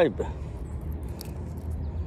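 Steady rush of shallow creek water running over rocks, with a few faint light clicks.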